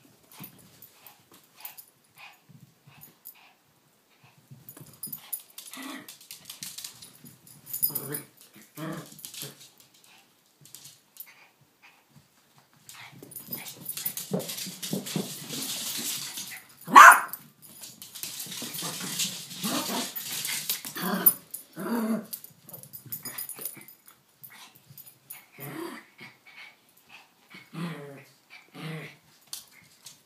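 A Yorkshire terrier and a King Charles spaniel play-fighting, with repeated short growls and grunts. About halfway through comes one loud, sharp bark, during a stretch of rustling scuffle.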